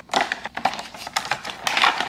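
Plastic baby-food squeeze pouches with screw caps being dropped and slid one by one into a clear plastic storage bin: a quick, irregular run of light clicks and rustles.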